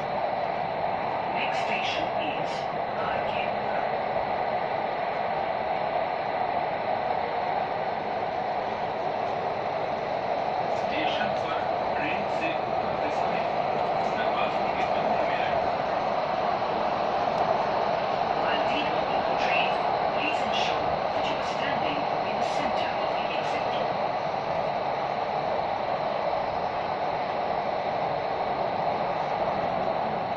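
Delhi Metro Magenta Line train running at speed through an underground tunnel, heard from inside the carriage as a steady, even rushing rumble.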